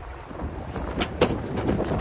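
Wind on the microphone over steady river and boat rumble, with two sharp knocks about a second in as a landed catfish hits the aluminum boat.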